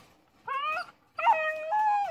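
Hungarian Vizsla puppy whining in her crate: a short rising whine about half a second in, then a longer high whine that steps up in pitch. She is unhappy at being shut in the crate.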